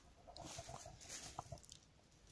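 Faint rustling with a few light clicks from someone moving about and handling a ridge-line cord and poncho fabric.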